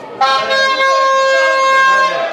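A horn sounds one long, steady-pitched blast that starts suddenly a moment in and is held for nearly two seconds.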